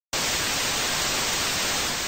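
Television static: a steady white-noise hiss from an old TV set, used as a sound effect. It starts abruptly at the very beginning and holds level throughout.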